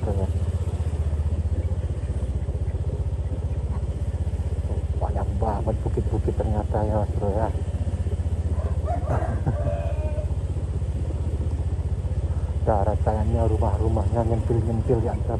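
Small motorcycle engine running steadily at low road speed. A person's voice talks in short stretches over it, about five seconds in, about nine seconds in, and near the end.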